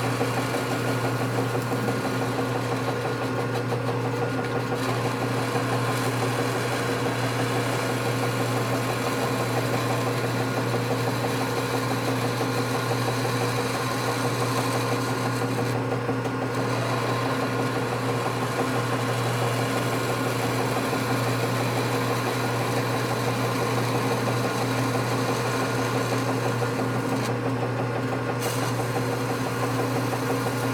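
Metal lathe running under power during a turning cut: a steady motor hum with a higher hiss over it, which briefly thins out about halfway through and again near the end.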